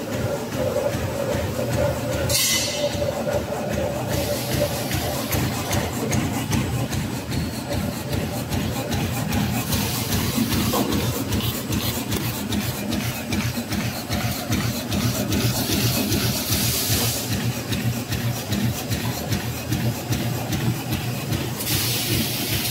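HSYW-1000SD plastic bag-on-roll making machine running: a steady hum under a fast, continuous clatter. Short hisses come about two seconds in and again near seventeen seconds.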